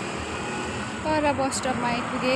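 Steady street traffic noise, with a woman's voice speaking from about a second in.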